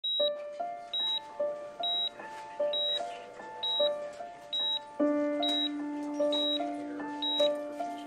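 A hospital patient monitor beeps with the heartbeat: a short high beep a little under once a second, at a steady pace. Soft background music plays under it, and a low held note enters about halfway through.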